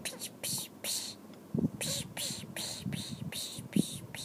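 A person whispering: a string of short hissy syllables with no voiced tone, with a couple of brief low bumps, the loudest near the end.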